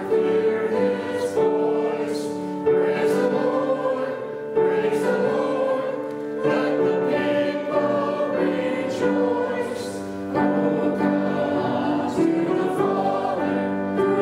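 A congregation singing a hymn together in sustained notes that change every second or two.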